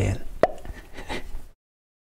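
A spoken word ends, then a single short mouth pop about half a second in, followed by faint breath. The sound cuts off to dead silence near the end, an edit in the recording.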